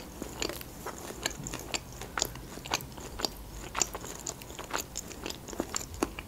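A person chewing food close to the microphone: many short, irregular wet mouth clicks, several a second.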